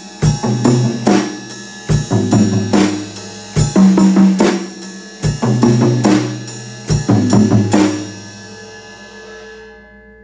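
Acoustic drum kit played live: a groove of sixteenth notes moving between the toms and snare drum over the bass drum. It stops about eight seconds in, leaving the drums and cymbals ringing as they fade.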